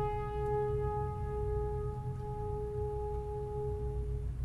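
Symphony orchestra sustaining one long, soft held note, a steady tone that grows mellower as its brighter overtones fade, over a continuous low rumble.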